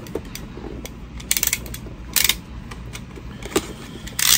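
Utility knife cutting open a toy's cardboard packaging: a quick run of clicks a little over a second in, a short scrape just after two seconds, and one more click near the end.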